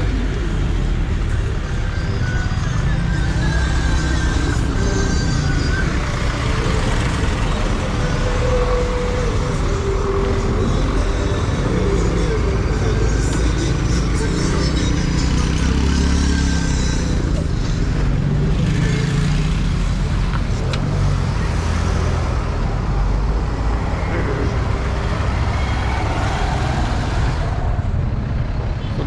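Steady road traffic on a busy city street: a continuous low rumble of passing vehicles, with a cough right at the start.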